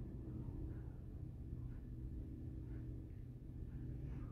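Quiet room tone with a steady low hum, and a few faint, soft strokes of a comb being drawn through a poodle's long ear hair.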